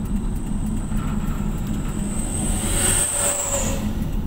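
Steady low road and engine rumble heard inside a moving car's cabin. A thin high whine swells in the second half and fades out just before the end.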